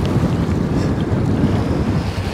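Wind buffeting the microphone in a steady low rumble, over small waves washing up on a shallow sandy shore.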